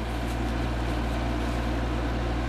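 A steady low mechanical hum, even and unchanging, with a faint hiss above it.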